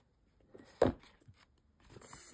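Cardstock photo pouches being handled: one sharp tap a little under a second in, with a few faint paper ticks around it.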